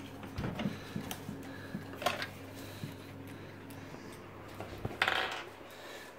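Thumbscrews being unscrewed and taken out of a full-tower PC case's side panel: a scatter of light metallic clicks and clinks over a faint steady hum, with a brief louder rustle about five seconds in.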